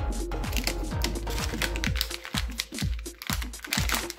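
Background music: a run of short falling notes over a steady low bass.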